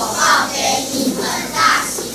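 A group of children's voices in unison, in short phrases that break and restart every fraction of a second.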